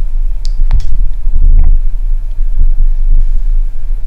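Camera handling noise as the handheld camera is moved down: a loud, uneven low rumble with a few faint ticks.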